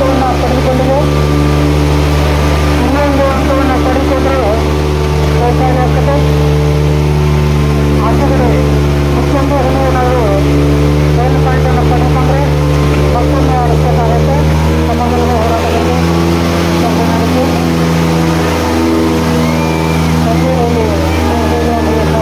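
Diesel tractor engines running loud and steady with a strong low hum, as two tractors coupled back to back pull against each other in a tochan tug-of-war. A crowd's voices shout over them.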